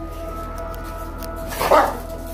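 One short, loud dog bark near the end, as the dogs scuffle, over steady background music.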